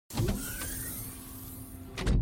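Sound effects for an animated logo reveal: a sudden rushing swish that holds steady, with a faint rising glide under it, ending in a sharp hit as the logo lands.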